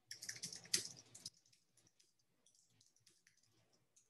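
Typing on a computer keyboard: a quick run of keystrokes in the first second or so, then scattered faint key clicks.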